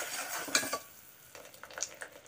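A perforated metal ladle stirring sugar syrup in a metal pot: a scraping swish through the first second, then a few light clinks as it is lifted out near the end.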